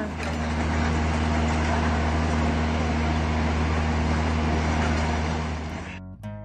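A steady low hum with a few overtones, of the engine kind, under an even rushing noise, fading out near the end.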